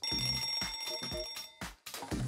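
An alarm-clock bell rings steadily over intro music with a beat, then cuts off suddenly near the end.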